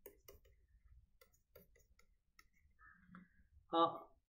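Faint, irregular clicks and taps of a stylus on a tablet screen as words are handwritten, several a second. A brief spoken 'uh' comes near the end.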